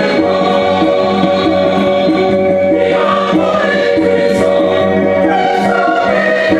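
Gospel music with choir singing over a steady beat of about three strokes a second.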